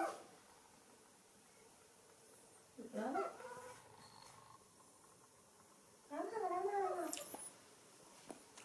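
A baby macaque calling twice, wavering pitched cries about three seconds in and again about six seconds in, the second one longer.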